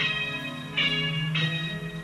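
A quiet passage of a rock song in which bell-like tones are struck three times, each ringing out over a held low note.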